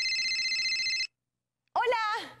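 Electronic telephone ring tone sound effect: one steady, high electronic tone that cuts off suddenly about a second in, signalling a call to a guest. After a short silence, a woman's voice calls out near the end.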